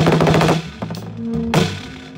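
Free-improvised jazz from a drum kit, basses and piano: a fast drum roll in the first half-second, then single drum hits over held low bass notes.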